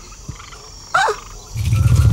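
Cartoon sound effect: a loud, low, fast-pulsing rumble starts about one and a half seconds in and keeps going, with a faint steady tone above it. Before it there is a quiet stretch with a brief exclaimed 'O'.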